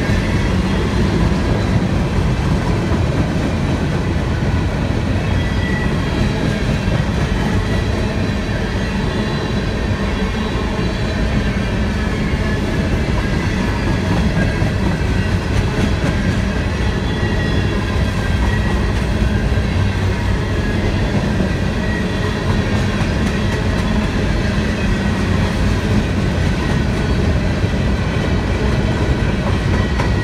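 CSX manifest freight train's covered hopper cars rolling past at close range, a steady loud rumble and rattle of steel wheels on the rails. A faint high thin tone wavers above it.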